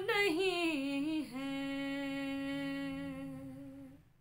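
A woman's unaccompanied voice singing a noha lament: a held note that wavers and drops in pitch about a second in, then a lower note held steady until it fades out near the end.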